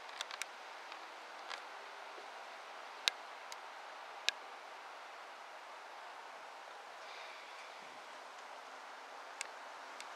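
Faint steady hiss, broken by a handful of sharp clicks, the loudest about three seconds in.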